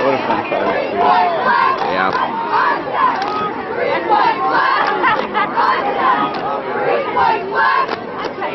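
Football crowd and sideline players shouting and cheering over one another, many voices at once without a break.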